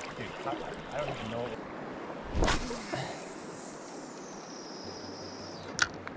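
A cast with a spinning rod and reel: a quick swish of the rod about two and a half seconds in, then the line peeling off the spool as a thin high whine that falls steadily in pitch for about three seconds, and a sharp click near the end.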